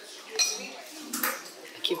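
Tableware clinking: chopsticks and dishes, with two sharp clinks about half a second and a second in.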